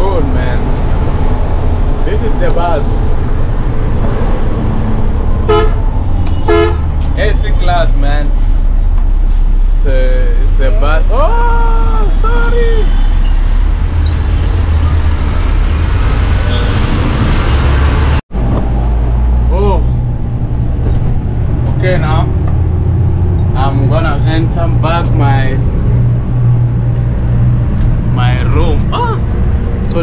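Inside a moving sleeper bus: a steady low rumble of the engine and road, with horn toots and voices over it. The sound drops out for an instant about two-thirds of the way through.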